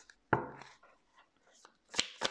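A deck of tarot cards knocked once against the table to square it, a sharp knock about a third of a second in, followed by faint card ticks. Near the end a shuffle begins: quick, evenly spaced clicks of cards.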